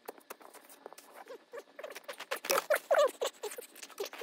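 Snow shovelling played back at five times speed: the shovel's scrapes and crunches in the snow come as a fast patter of short clicks. In the second half a man's exclamation, sped up to a high squeaky pitch, is the loudest sound.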